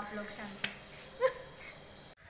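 A voice trailing off, then a single sharp click a little over half a second in and a brief vocal sound about a second in, over low room noise.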